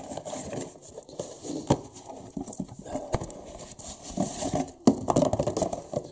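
Unpacking a steel brake disc from its cardboard box: cardboard and packaging rustling and scraping, with a few sharp knocks, the loudest near the end.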